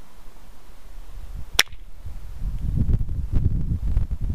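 A single sharp click about one and a half seconds in, then low, uneven rubbing and handling noise as a flint arrowhead is turned over in the fingers close to the microphone.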